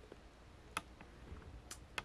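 Quiet room tone with a few faint, sharp clicks, the clearest about three-quarters of a second in and near the end.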